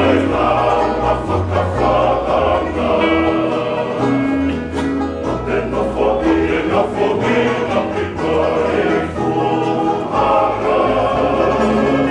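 Tongan kava-club men's group singing a song in multi-part harmony, accompanied by several strummed acoustic guitars, with a bass line that steps from note to note.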